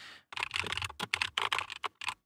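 Typing on a computer keyboard: a quick, irregular run of key clicks starting about a third of a second in.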